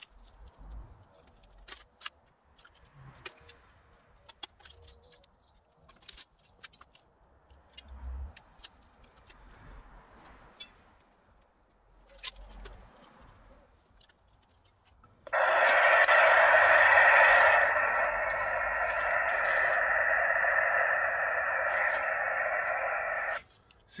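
Faint scattered clicks and knocks of handling, then a loud steady hiss that starts suddenly about fifteen seconds in and cuts off about a second before the end.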